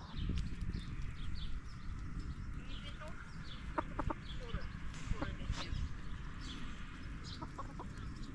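Domestic hens clucking in short calls, a few around the middle and again near the end, while small birds chirp high and often over a steady low rumble.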